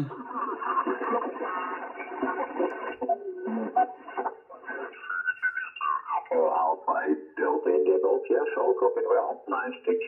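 Yaesu FT-710 HF transceiver's receiver audio as the tuning dial is turned across the 40-metre band, with digital noise reduction switched on. Steady whistling tones come first, then fragments of single-sideband voices from about six seconds in, all sounding thin and narrow.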